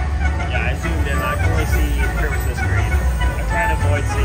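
Buffalo Gold slot machine playing its win celebration music while the win meter counts up, over the steady hum and voices of a busy casino floor.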